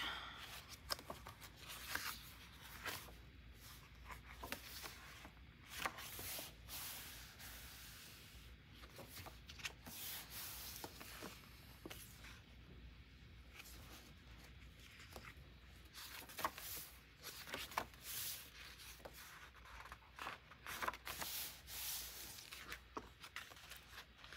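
Quiet, intermittent rustling and crinkling of paper journal pages and a glossy sticker sheet being handled, with scattered small taps and rubs. Near the end a sticker is peeled from its sheet.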